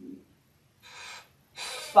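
A person drawing two audible breaths in a pause mid-sentence, the second one just before speaking resumes.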